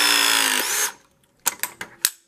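Ridgid ProPress RP 340 battery press tool's motor driving the jaw closed on a 1-inch Viega copper press tee, its whine sinking slowly in pitch under load. It stops abruptly a little under a second in as the press cycle completes, and a few sharp clicks follow.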